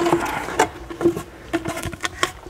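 Flexible ribbed brake-cooling hose being pushed and twisted onto a carbon-fibre brake duct, giving a handful of separate light knocks and scrapes.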